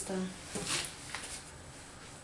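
A woman's speech trails off at the start, then the room goes quiet, with a short soft hiss a little under a second in.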